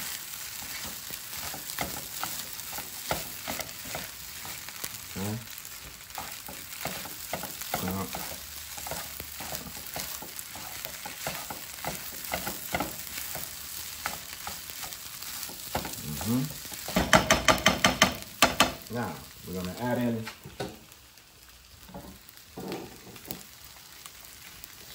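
Shrimp fried rice sizzling in a nonstick skillet while being constantly turned and flipped, with the utensils scraping and clicking against the pan. About three-quarters of the way through comes a quick run of sharp taps on the pan, and the sizzle grows quieter near the end.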